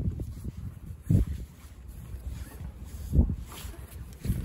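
Strong wind buffeting the microphone: a low, uneven rumble with two stronger gusts, about a second in and again near the end.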